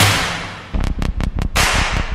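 Background music of an edited montage: a whoosh fades out, then a quick run of sharp percussion hits comes about a second in, building into a rising swell near the end.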